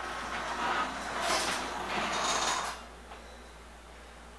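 Garage door opener motor running as the sectional door travels open, then stopping about two-thirds of the way through.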